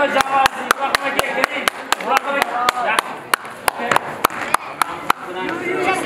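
Hands clapping in a steady rhythm, about four claps a second, stopping about five seconds in, with voices talking underneath.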